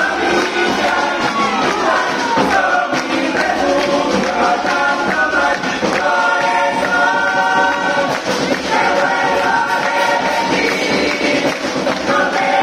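Uruguayan murga choir of young voices singing in close harmony, holding long chords, with a downward slide in pitch about a second in.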